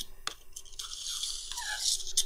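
Faint metal scraping, with a light click just after the start, as a screwdriver tip pushes an oil-control ring spring around its groove in a Mazda 13B rotor. The spring spins freely in the groove, the sign that it is fitted on the wrong side and won't seat or seal properly.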